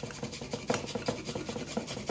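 Raw carrot being grated by hand on a small handheld grater, a run of quick rasping strokes with a few louder ones about a second in and near the end.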